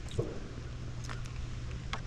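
Footsteps on a paved road, a few steps about a second apart, over a low steady hum.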